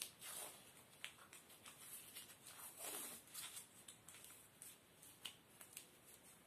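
Near silence with faint rustling and a few small clicks from hands handling a dog's front paw.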